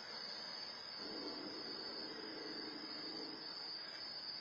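Crickets chirring steadily in a high, even drone over a faint hiss, as picked up by an outdoor security camera's microphone. A faint low hum comes in about a second in and fades out after about three seconds.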